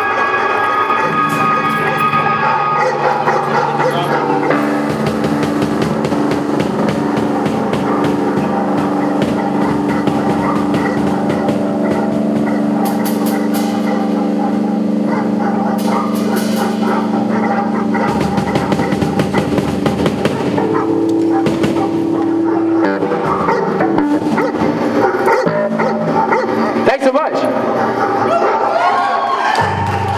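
Live band playing amplified electric guitar through a Vox amplifier, with held, droning chords that change about two-thirds of the way through.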